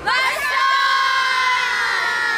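A group of young women shouting one long cheer in unison, several voices starting together and held on one note.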